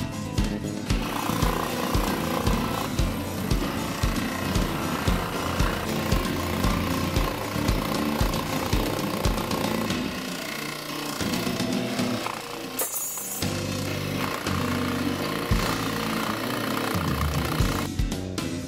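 A scroll saw running, its blade cutting along a pencilled oval in a thin wooden panel to open the tissue slot, starting about a second in. Background music with a steady beat plays over it.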